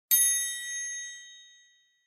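A single high, bright chime struck once just after the start, ringing on and fading away over about a second and a half: the page-turn signal of a read-along picture book.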